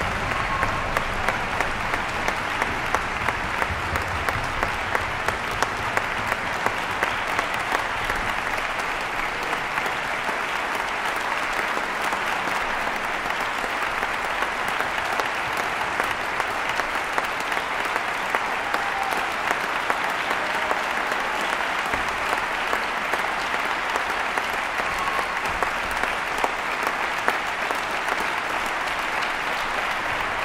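Concert-hall applause from audience and orchestra, a steady clapping. Through roughly the first dozen seconds, sharper single claps stand out at about two a second.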